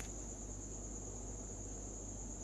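Background noise with no speech: a steady high-pitched whine over a low hum. There is a faint click right at the start.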